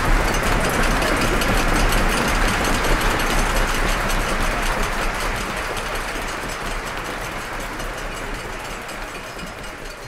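Audience applause: dense, even clapping with no music under it, fading steadily over the second half.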